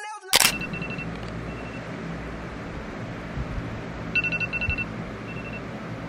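iPhone alarm going off: groups of short, high electronic beeps, faint at first with a louder run of about six beeps around four seconds in, over a steady low hum. A sharp click sounds just after the start.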